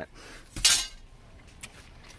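Removed chrome window trim strips clinking together once about half a second in, a sharp metallic chink with a short ring, then a faint click near the end.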